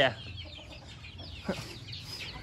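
Chicks peeping faintly and repeatedly, with a single short tap about one and a half seconds in.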